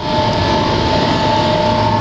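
Sawdust-fired drying furnace with its electric blower fans running: a steady mechanical hum with two held whining tones over it.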